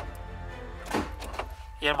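Background music with a single dull thunk about a second in: the starter of a Chevrolet Corsa 2.0 8v engaging but unable to turn the engine, which is locked by a seized gearbox.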